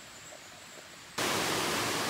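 Faint background at first, then about a second in a sudden switch to a steady, even rushing hiss of running water from a rainforest stream.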